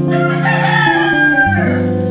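Strummed acoustic guitar background music, with a loud, long bird call over it for about a second and a half, sloping down in pitch as it fades.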